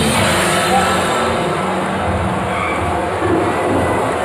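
A steady, loud rumbling noise with no clear notes, a sound-effect passage in the dance routine's music mix.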